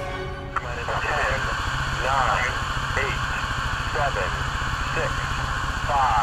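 A launch-control voice counting down the final seconds before an Atlas V liftoff, one number about every second, over a steady background hiss and low hum. A sustained musical chord cuts off about half a second in, with a click.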